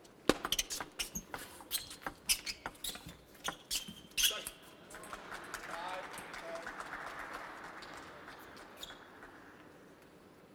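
A table tennis ball clicking back and forth off rackets and table in a quick rally for about four seconds. Then the audience applauds and cheers the point, fading out over the next few seconds.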